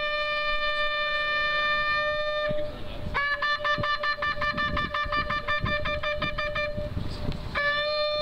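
A shofar (ram's horn) blown in the Jewish ritual calls. It sounds one long held blast, then after a short break a rapid run of short staccato notes like the teruah call, and another long blast begins near the end.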